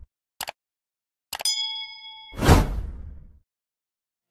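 Subscribe-button animation sound effects: a quick double mouse click, then another click followed by a bright bell-like ding that rings for about a second. A loud whoosh comes next and fades out.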